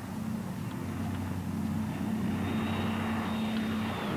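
Propeller aircraft's piston engine running in a steady drone that swells over the first second, with a thin high whine joining about halfway through.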